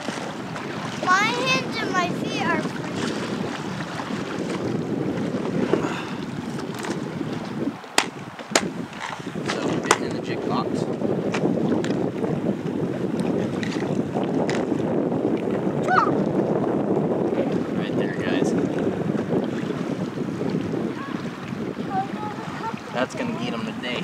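Steady rush of river current around a drifting inflatable raft, with a few sharp plastic clicks about eight to ten seconds in as a tackle box is handled.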